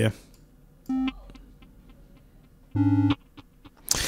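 Two short synthesizer notes at the same pitch from a Bitwig Grid patch, a quieter one about a second in and a louder, brighter one near three seconds, trailed by faint repeats from the patch's delay.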